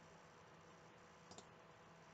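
Near silence of room tone, broken by one faint click a little over a second in, as the slideshow is advanced.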